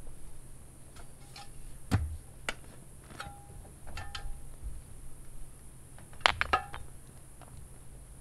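Stones clacking and knocking as flat rocks are handled and set under the foot of a wooden post: a handful of irregular sharp hits, two close pairs of them loudest, some with a short ringing clink.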